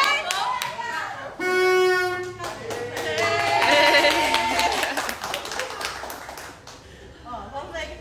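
A horn blasts once for about a second, the signal that the ten-second timed grab is over, among people clapping and cheering.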